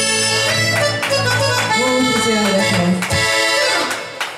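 Live ranchera music: an accordion-voiced melody over a steady drum beat of about two strikes a second, with a low melodic run in the middle. The song stops abruptly just before the end.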